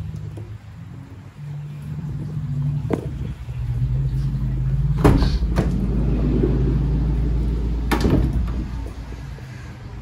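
A Mercedes-Benz Sprinter van's side sliding door is unlatched and rolled open about five seconds in, with sharp clunks and another clunk near the end, over a low steady rumble.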